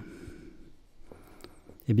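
Whiteboard marker writing on a whiteboard: faint strokes, with a few thin high squeaks of the felt tip about halfway through.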